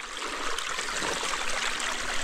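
Small stream of water trickling over rocks, a steady rush of running water.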